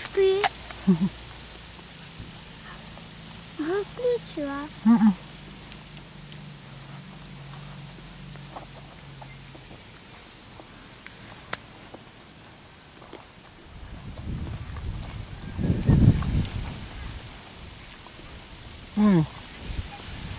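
Grasshoppers chirring: a high, thin, steady buzz that comes and goes in stretches of several seconds. A low rumble rises and falls about two thirds of the way through, and a few brief murmured voice sounds come early on.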